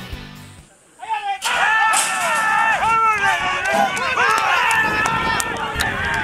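Background music fading out in the first second. Then, after a brief gap, a horse-race caller's voice starts calling the race fast and excitedly with swooping pitch. The voice sounds thin, with sharp clicks scattered through it.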